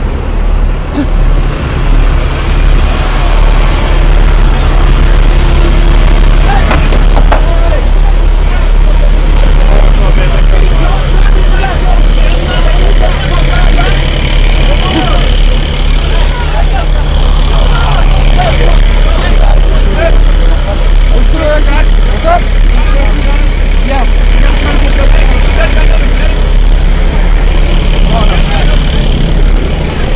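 Heavy vehicle engine running with a steady, loud low drone, with indistinct voices over it.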